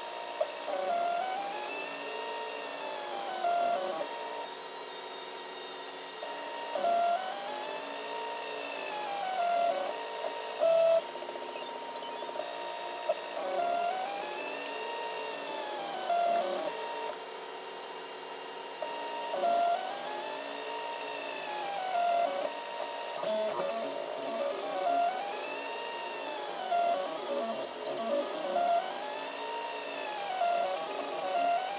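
3D printer stepper motors whining as the print head moves, each move a tone that rises and falls in pitch, repeating every second or two over a steady hum, while the printer lays down the first outline on the bed.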